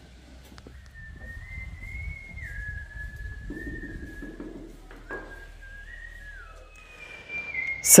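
A person whistling a slow tune: one clear tone that moves in steps between held notes, starting about a second in.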